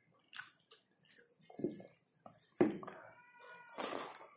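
Wet chewing and lip-smacking from eating rice by hand, with a cat meowing once, a drawn-out call, about three seconds in.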